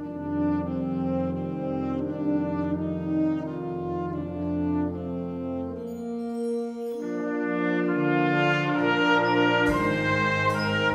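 Wind band playing sustained brass chords, with French horns, trombones and trumpets over a low bass line. The low voices drop out about six seconds in, then the full band comes back in and grows louder toward the end.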